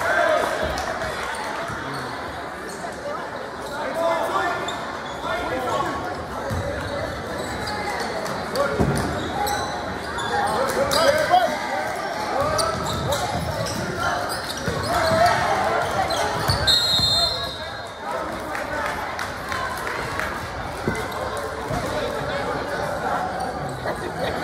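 Basketball game in a large gym: a ball bouncing on the hardwood floor amid indistinct voices of players and spectators, echoing in the hall.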